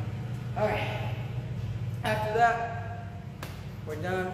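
A man talking in two short bursts, over a steady low hum.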